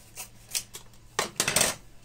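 Short rustles and clatters of a plastic marinade packet and a pair of scissors being handled and set down on a countertop, loudest a little over a second in.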